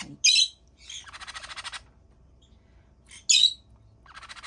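Month-old green-cheeked conure chicks calling: two short, loud squawks about three seconds apart, with a buzzy, rapidly pulsed call of under a second between them. These are the begging calls of hungry chicks waiting to be fed.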